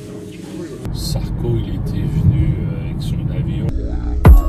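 Car driving, heard from inside the cabin: a steady low road and engine rumble that starts abruptly about a second in, with people talking over it.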